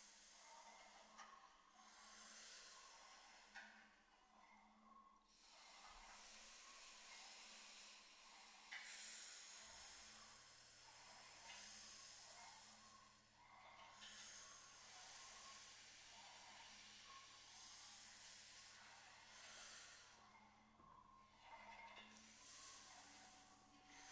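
Quiet, breathy hissing from voices, swelling and fading every few seconds with short gaps between: singers breathing and hissing without pitch, as an extended vocal technique.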